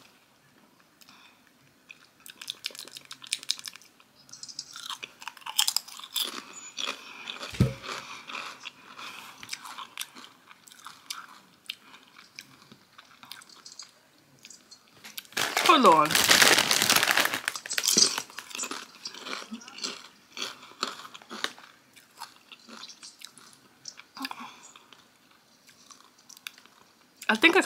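A person crunching and chewing Doritos tortilla chips: runs of small crisp crunches. A short stretch of voice breaks in a little past the middle.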